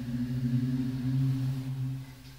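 A low, steady droning hum with a couple of overtones, swelling in at the start and fading out near the end.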